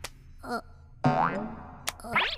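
Comic cartoon 'boing' sound effects: short springy pitched wobbles, with a longer rising one about a second in and soft clicks at the start and near the end.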